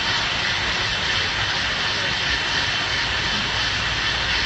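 Steady, fairly loud background din of a large indoor public space, an even rushing noise with a low rumble, picked up by a phone's microphone.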